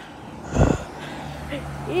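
Road traffic: a brief low rumble about half a second in, then a faint steady low hum.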